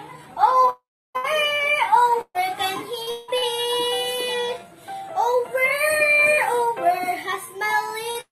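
A young girl singing in long held notes with slides between them; the sound cuts out completely twice for a moment early on.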